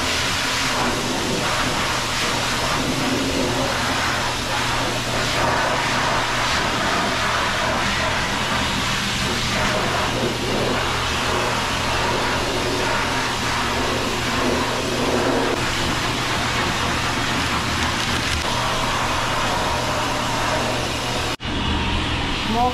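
High-velocity pet dryer blowing air steadily through its hose onto a toy poodle puppy's wet coat: a loud, unbroken rush of air that cuts out for an instant near the end.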